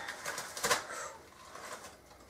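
Faint handling of a small plastic pot as its lid comes off: a few light clicks and rustles of plastic.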